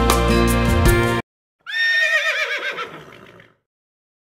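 A song ends abruptly about a second in. After a short gap, a horse whinnies once, a call under two seconds long whose pitch quavers and falls away.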